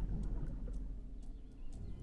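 Low, steady outdoor rumble with a few faint ticks, and a faint bird chirp near the end.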